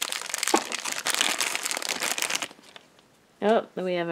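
Black plastic blind-bag wrapper crinkling for about two and a half seconds as it is pulled off a small vinyl figure.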